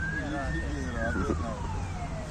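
An emergency vehicle's siren wailing in one slow sweep: the pitch climbs to a peak about a second in, then falls slowly away.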